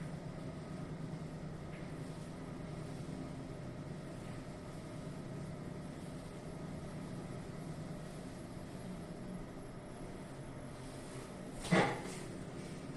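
Kone MonoSpace machine-room-less elevator car travelling upward, a steady low hum of the ride. Near the end, a single brief clunk.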